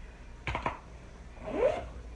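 Lips pressing and parting after lip moisturizer is applied: two quick smacks about half a second in. A short closed-mouth hum that rises and falls in pitch follows about a second and a half in, close to the microphone.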